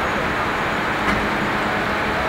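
Steady city street traffic noise: a continuous hum of passing road vehicles, with a brief faint tick about a second in.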